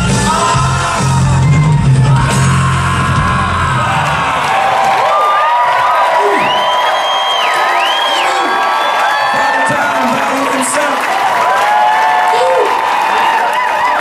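A live rock band's final chord rings out and stops about four seconds in, followed by a large concert crowd cheering, whooping and shouting.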